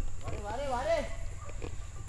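A person's voice giving a short wavering cry, rising and falling in pitch, about half a second in, over a steady low outdoor rumble, with a few faint knocks soon after.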